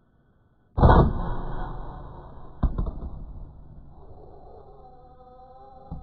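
Air rifle shot fired at a rat through a night-vision scope, a single sharp report just under a second in that dies away over about a second. A second sharp knock follows about two seconds later, and faint steady tones start near the end.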